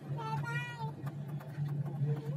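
A short high-pitched cry, rising slightly, lasting under a second, over a steady low hum inside the cable car cabin.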